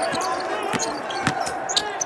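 Basketball being dribbled on a hardwood court, with a bounce about every half second.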